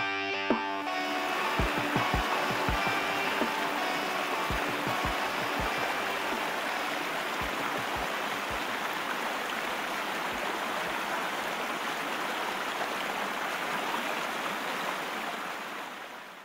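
Distorted-guitar rock music cuts off about a second in, giving way to a steady rush of river rapids with a few low thuds, which fades out near the end.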